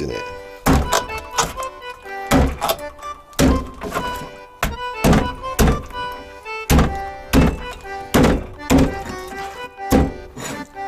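Heavy knife strikes on a plastic cutting board, one or two a second at uneven intervals, as a kitchen knife chops through an anglerfish's jaw to take off the teeth. Background music plays throughout.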